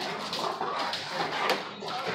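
Two dogs play-wrestling, with dog vocalizations over the scuffling of paws and bodies in quick, irregular bursts.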